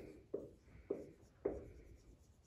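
Dry-erase marker writing on a whiteboard: three short marker strokes, a little over half a second apart.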